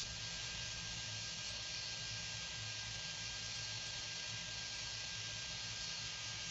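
PowerSmith 3-in-1 ash vacuum running with its nozzle sucking up ash: a steady rush of air over a low motor hum, with a faint steady whistle.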